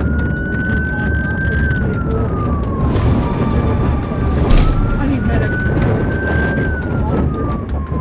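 Police cruiser siren wailing: a single tone that rises, holds and slowly falls, twice, heard from the pursuing cruiser over the heavy rumble of the car driving fast on a dirt surface.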